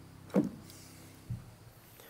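The last held keyboard chord dies away while a microphone on a boom stand is handled and swung aside. There is a loud knock with a quick downward swish about a third of a second in, and a softer low thump just after a second.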